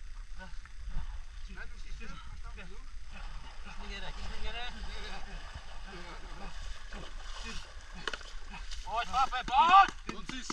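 Faint, indistinct talking from several people over a low steady rumble, with one voice growing louder near the end.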